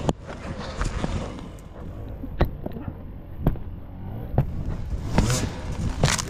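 Rotten dead wood cracking as a fallen log is wrenched and broken by hand. There are several sharp cracks, the loudest about two and a half and three and a half seconds in, over a low rumble.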